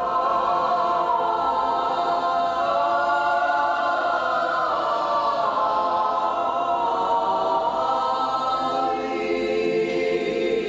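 Choir singing an unaccompanied Eastern Orthodox liturgical chant, in long held chords that shift slowly in pitch.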